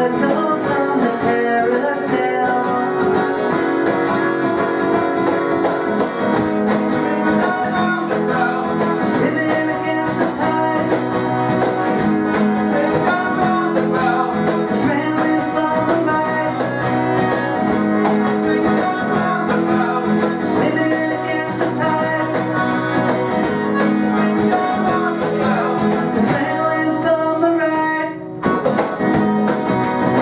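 Live acoustic pop-folk band playing: strummed acoustic guitar, piano accordion and cajon in a steady beat. The music briefly drops back about two seconds before the end, then picks up again.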